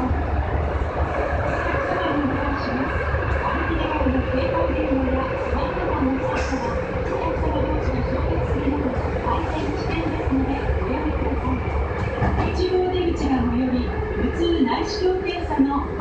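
Osaka Metro 5300 series subway train running through a tunnel, heard from inside the car: a steady low rumble of wheels and running gear with a steady humming tone over it. A voice talks on and off over the train noise.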